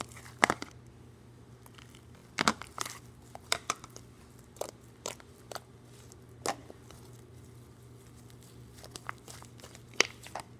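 Slime being stretched and squeezed by hand, giving irregular sticky clicks and pops, the loudest about half a second in and around two and a half seconds in. A low steady hum runs underneath.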